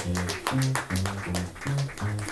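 Double bass played pizzicato in a jazz solo, a run of plucked low notes at about four a second, with the drum kit adding light cymbal and drum strokes.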